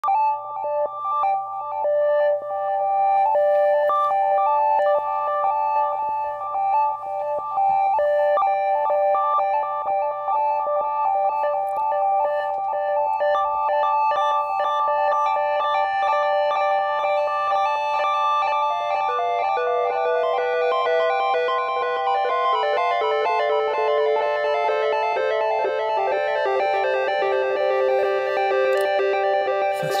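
Moog Subharmonicon analog synthesizer playing a repeating sequenced pattern of notes from a single oscillator through a delay, the echoes stacking up. About two-thirds of the way in, a lower, busier run of notes joins the pattern.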